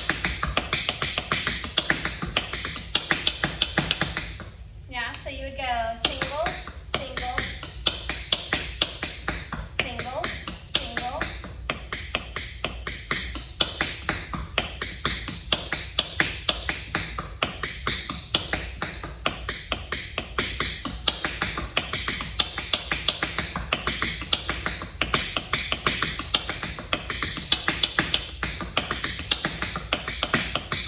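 Tap shoes striking a wooden studio floor in rapid, continuous paradiddle tap patterns, many sharp taps a second, with a short break about four and a half seconds in.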